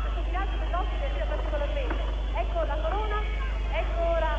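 Indistinct voices of several people calling out at once, over a steady low electrical hum.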